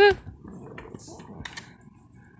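Faint scuffs and a few small ticks of an English bulldog's paws as he walks across a concrete patio, just after a high-pitched word at the very start.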